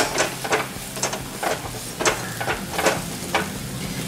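Metal spatula scraping and stirring grated ridge gourd in an aluminium kadhai, about two strokes a second, over a steady sizzle of frying.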